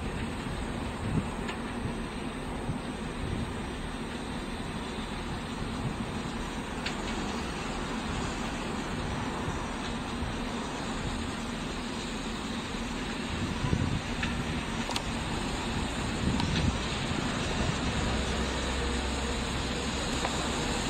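Steam locomotive and its coaches running slowly on the line, a steady rumble that grows louder as the train draws nearer, with a few short sharp clicks.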